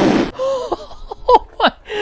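Excited wordless vocal exclamations, a quick run of short cries that fall in pitch. A brief burst of noise at the very start.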